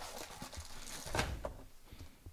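A cardboard accessory box and a plastic bag being handled: light rustling with a few soft taps, the loudest about a second in.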